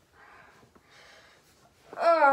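A boy's faint, breathy huffs and exhalations, two or three about a second apart, as he strains to pop his shoulder back in.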